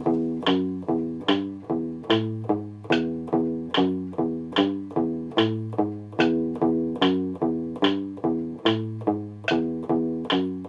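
Electric guitar picking single notes at a steady, even pace, a four-note fingering exercise stepping up the frets from second to fifth, about two notes to every click of a metronome set at 73 beats a minute.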